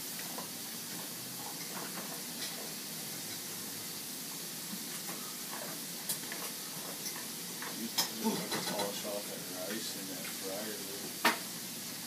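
Food sizzling steadily in a frying pan on a gas stove, with a few sharp clicks and knocks near the middle and end, and faint low voices about eight seconds in.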